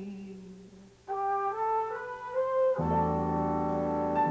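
Ballad accompaniment: a female singer's held note fades away, then about a second in a brass line climbs in a few steps, and near three seconds the full orchestra comes in on a sustained chord.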